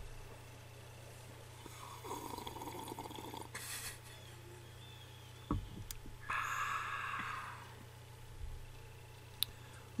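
Faint sipping and slurping of coffee being tasted. There is a noisy slurp about two seconds in, a click a little after five seconds, and a louder slurp about six seconds in.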